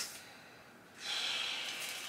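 A person's long, steady breath out, starting about a second in, like a sigh.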